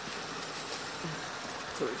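Steady, even background hiss of a garage, with a short faint voice about a second in and a man starting to speak near the end.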